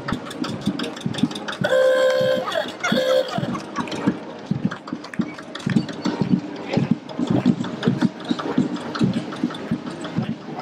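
Vintage tractor engine chugging slowly with a steady, even knock. About two seconds in, a vehicle horn sounds twice: one long blast, then a short one.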